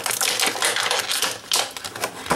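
Small plastic toy packaging being handled: a rapid, irregular run of clicks and crinkles.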